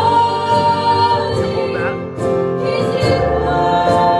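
Live worship band: several women singing a slow worship song together, accompanied by keyboard and acoustic guitar.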